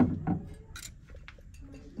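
A cranberry glass vase being set down on a shelf and let go: a few light knocks and clinks of glass on wood.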